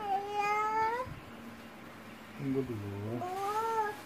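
A cat meowing twice: a long drawn-out call, then after a pause a lower call that rises in pitch.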